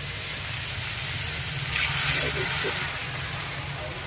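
Water poured into hot masala paste frying in a kadhai, setting off a sizzle and hiss that swells to its loudest about two seconds in and then eases.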